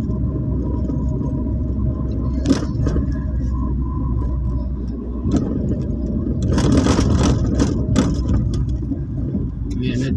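Steady low rumble of a car's engine and tyres heard from inside the cabin while driving slowly, with a few sharp clicks or rattles and a short burst of hiss and clatter about seven seconds in.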